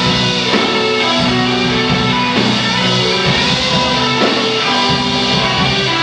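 Live rock band playing an instrumental passage: electric guitars, bass, keyboard and drum kit together, loud and steady, with no singing.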